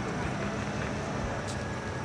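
Steady low rumble with a hiss over it: outdoor background noise, with one faint click about one and a half seconds in.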